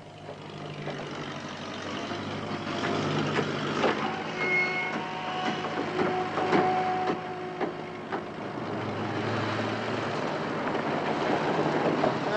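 Construction-site sounds: irregular hammer blows knocking on timber framing over the steady hum of an engine.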